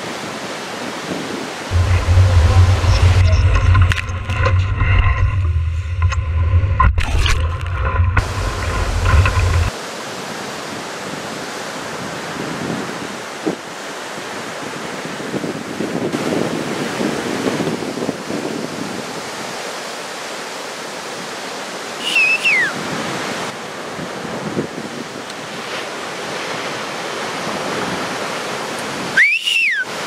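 Steady rushing of heavy ocean surf and wind on the microphone. For the first ten seconds or so, music with a deep bass line plays over it. Short high sliding calls come twice, once past the middle and once at the end.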